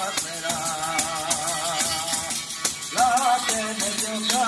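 Live traditional Spanish folk music: a man sings a wavering, ornamented melody over a steady beat of rattling hand percussion. One sung phrase ends a little past two seconds in, and a louder new phrase starts about three seconds in.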